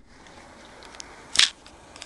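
Handling noise from a handheld camera being moved. There is a faint click about a second in, then a short, loud rub against the microphone about one and a half seconds in.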